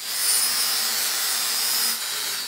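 Angle grinder with a Norton EasyTrim flap disc grinding steel: a steady abrasive hiss with a faint high whine from the spinning disc.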